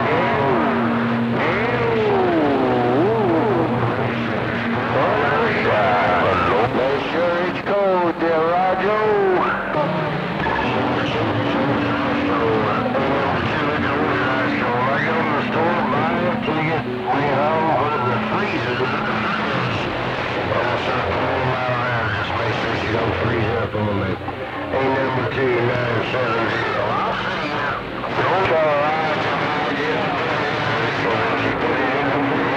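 Music and voices coming in over a CB radio on channel 28, a strong long-distance skip signal heard through the radio's speaker, with wavering, warbling tones over steady held notes.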